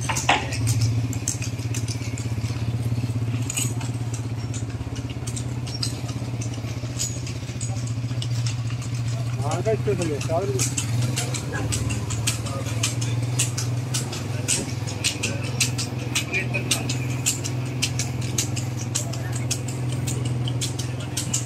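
Motorcycle engine running steadily at low speed, with quick clicking and rattling that grows busier in the second half, as a buffalo cart rolls along a paved lane just ahead. A short call from a person about halfway through.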